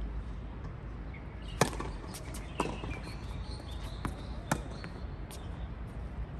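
Tennis ball struck by racquets and bouncing on a hard court during a rally: a handful of sharp knocks, the loudest about a second and a half in.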